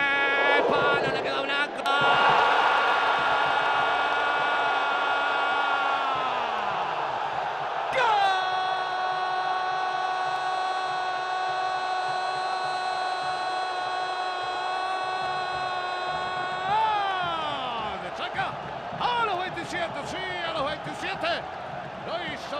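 Football TV commentator's drawn-out goal cry: a long held shout from about two seconds in that drops in pitch near seven seconds, then a second, even longer held note from about eight seconds to seventeen that slides down at its end, over steady stadium crowd noise.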